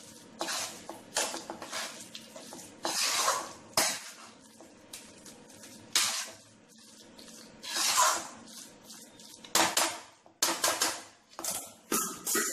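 Spatula scraping and clinking against a steel kadai while stirring a thick mashed potato-and-vegetable bhaji: irregular strokes, roughly one or two a second, some louder than others.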